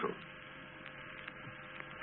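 Steady hum and hiss with a few faint clicks: the background noise of the old 1973 radio speech recording, heard in a pause between phrases.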